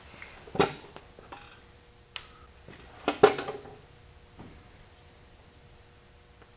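A few sharp metallic knocks and clinks of a steel linear rod being handled on its bearings on a steel mill table, the loudest just after three seconds in, over a faint steady hum.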